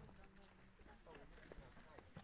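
Faint, distant chatter of a group of people talking outdoors, with a few light clicks.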